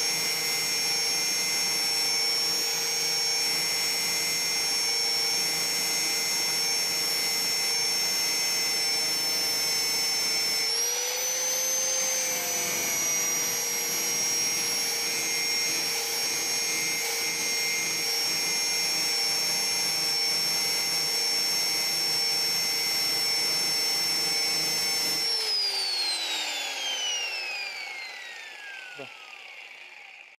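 Electric angle grinder running steadily against a metal motorcycle clutch assembly with a high whine, its pitch rising briefly about eleven seconds in. About twenty-five seconds in it is switched off, and the whine falls away as the disc spins down.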